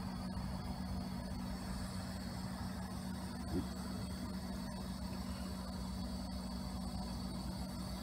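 Steady low mechanical hum with a background hiss, like a running fan or appliance, and one short faint sound about three and a half seconds in.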